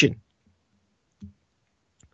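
A pause in speech, close to silence, with one short, low click a little over a second in.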